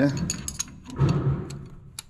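Light metallic clicks and clinks of a ring spanner and hex key working on a pump-injector TDI engine's rocker-arm adjusting screw as its lock nut is tightened.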